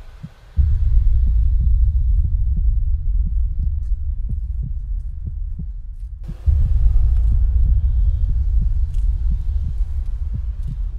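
A deep, loud rumbling drone from a horror film's sound design, with a steady pulse of about two or three thuds a second like a heartbeat. It starts about half a second in, drops away for a moment about six seconds in, then comes back.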